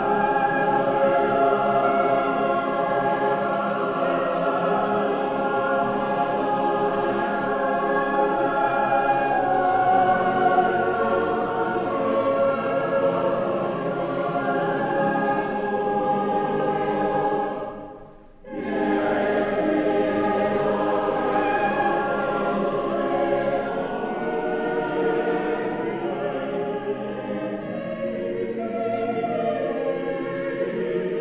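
A choir singing sustained chords, with a brief break in the sound about eighteen seconds in before the singing resumes.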